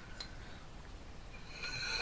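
Mostly quiet room with a few faint clicks, then a faint, high-pitched child's voice that starts near the end.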